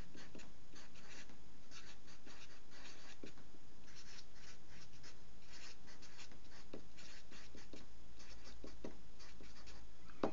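A pen scratching across paper in quick, irregular strokes as a line of words is written out by hand.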